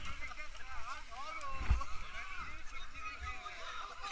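Several rafters' voices chattering and calling back and forth, not close to the microphone, over a low rumble, with one dull thump a little before halfway.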